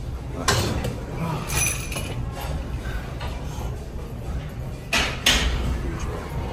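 Gym background noise with sharp knocks: one about half a second in and two close together near the end.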